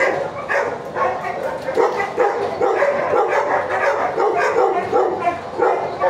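Shelter dogs barking and yipping in their kennels, many calls overlapping with no pause.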